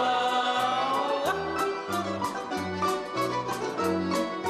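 Russian folk-style song from a choir with instrumental backing: a long held note ends with a glide about a second in, then a brisk dance beat takes over with a bass line stepping between two notes.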